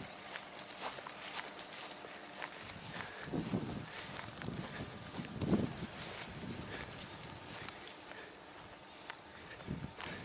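Footsteps walking through short grass, a steady run of soft swishing steps.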